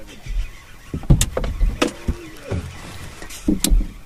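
Sharp knocks and thumps on a bass boat's deck as the anglers move about and a landing net is grabbed and swung, a cluster about a second in and another near the end.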